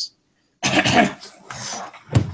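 A person coughs to clear the throat: one loud, rough cough about half a second in, trailing off into quieter noise.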